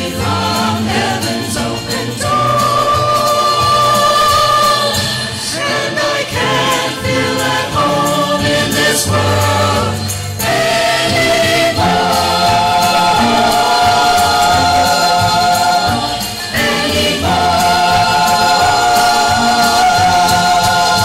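Small church choir singing an anthem with piano accompaniment, its phrases ending on long held notes in the second half.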